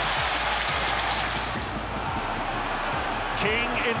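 A football stadium crowd cheering and clapping a goal: a continuous mass of voices and applause. A commentator's voice comes in near the end.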